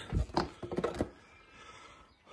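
A motorcycle's plastic rear seat cowl being unclipped and lifted off: a few sharp clicks and knocks in the first second, then quiet handling.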